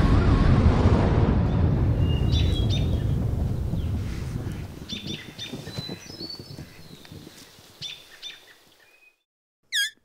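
The rumble and debris noise of an explosion die away steadily over about nine seconds, with short high chirps scattered through the fading tail. It then cuts to silence, broken only by a brief run of quick falling chirps just before the end.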